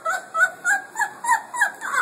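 A woman's high-pitched, cackling laughter, rhythmic at about three short bursts a second.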